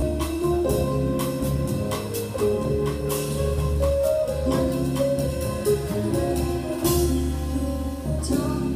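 A small live jazz band playing an instrumental passage: drum kit keeping a steady beat, with upright bass, keyboard and a wind instrument carrying the melody.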